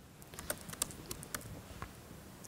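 Typing on a laptop keyboard: about ten quick, uneven key clicks, faint.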